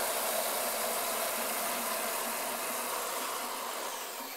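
Stainless steel AMSCO toilet flushing: a steady rush of water swirling in the bowl that slowly tapers off.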